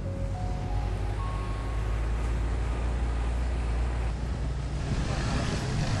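Open-top off-road vehicle driving, its engine and tyres making a steady low rumble with wind and road hiss that grows stronger near the end.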